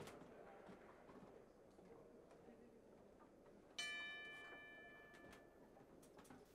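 Boxing ring bell struck once about four seconds in, ringing and fading over a second or two: the bell that starts round six.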